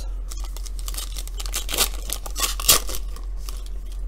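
A foil trading-card pack being torn open and its wrapper crinkled: a run of rustling rips, the sharpest near three seconds in.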